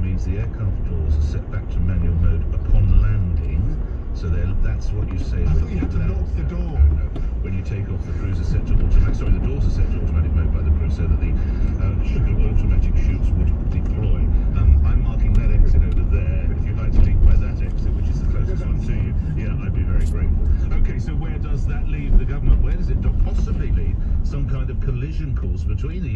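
Car cabin noise while driving: a steady low rumble of road and engine noise heard from inside the car.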